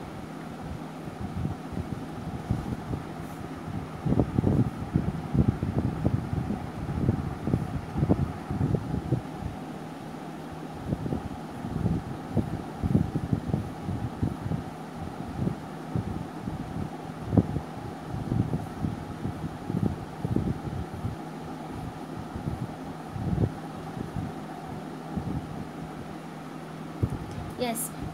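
Graphite pencil sketching on a paper drawing pad: irregular short strokes and scrapes as lines are drawn, over a steady fan-like hum.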